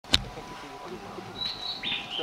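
A sharp click right at the start, then a small bird chirping in short, level-pitched notes from about one and a half seconds in, over a faint low murmur.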